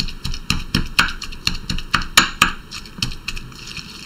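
Pestle pounding a wet herb, garlic and spice paste in a marble mortar: a quick run of knocks, about four a second, that slackens and fades near the end.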